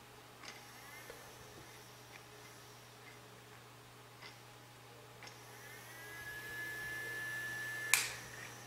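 Small DC cooling fan, the original fan from the recorder's hard-drive box, powered through alligator clips: a few faint clicks as the clips are handled, then, about five and a half seconds in, the fan spins up with a rising whine that settles to a steady pitch. It is fairly quiet, over a low steady hum, and a click near the end cuts it off.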